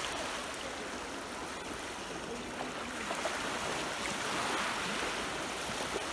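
Small waves breaking and washing up the shore close by, a steady rush of surf.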